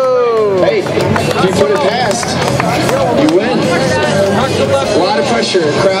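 Onlookers' voices: a long falling 'ohhh' exclamation that trails off in the first second, then chatter and short shouts from a group of spectators.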